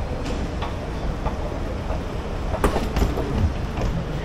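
Steady low rumble of a BTS Skytrain train running through the elevated station, with a few sharp clicks about two and a half seconds in.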